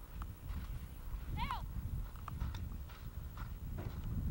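Polo ponies galloping on grass turf, their hooves drumming irregularly over a low rumble, with one brief high-pitched call about a second and a half in.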